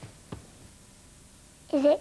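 Quiet room with a couple of faint knocks, then near the end a child's short vocal sound that dips and rises in pitch.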